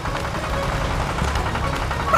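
Cartoon background music with a steady low bass, under a dense, rapid fluttering noise.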